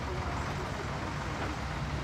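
Miniature railway train pulling out of a station: a steady low rumble from the carriages rolling past and the locomotive working.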